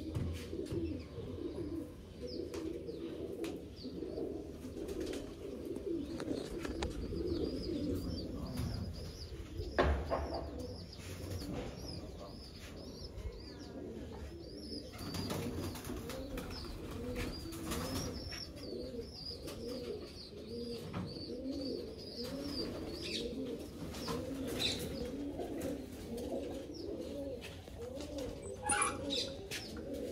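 Domestic pigeons cooing continuously, many birds overlapping. A thin, high chirping runs through the middle stretch, and there is a single knock about ten seconds in.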